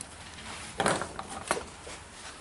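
Small handling noises from a piece of window glass and hand tools at a workbench: a short scrape a little under a second in, then a sharp click about a second and a half in, with a few faint ticks.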